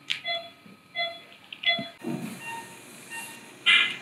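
Operating-theatre patient monitor beeping: three short, evenly spaced beeps in the first two seconds, then fainter tones. A short, louder burst of sound comes near the end.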